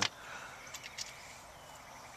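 Quiet background noise with a couple of faint soft ticks a little before the middle.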